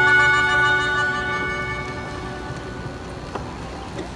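A melodica (pianica) and a nylon-string classical guitar hold the song's final chord, which slowly fades away.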